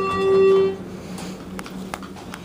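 Schindler hydraulic elevator's arrival chime: the lower second note of a falling two-note ding-dong rings out and fades within the first second. A few faint clicks follow.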